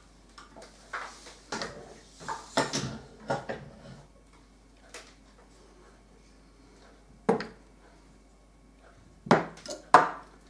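Clinks and knocks of M1 Garand rifle parts and tools being handled and set down on a wooden workbench: a scatter of them in the first few seconds, a single knock past the middle, and a louder cluster near the end.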